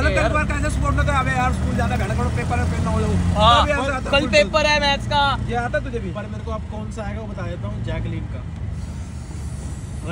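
Vehicle engine humming steadily, heard from inside the passenger cabin, with men's voices over it; the hum drops away about halfway through.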